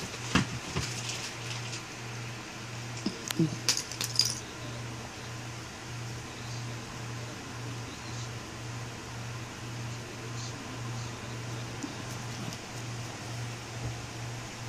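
A small metal nail clipper snipping and clicking at a toenail: two sharp clicks right at the start and a quick cluster of them about three to four seconds in. Throughout there is a steady low hum that pulses evenly.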